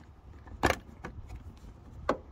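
A single sharp click about two-thirds of a second in, as a rubber hose is pulled off a plastic port on a car's EVAP vapor canister, with faint handling noise around it.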